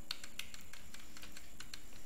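Computer keyboard being typed on: about a dozen quick, irregular key clicks.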